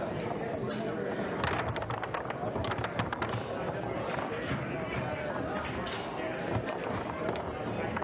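Foosball game play: the ball and the players' rods knock sharply against the table, a quick cluster of clacks a second and a half to three seconds in and a few more around six seconds. Steady background chatter of people in the room underneath.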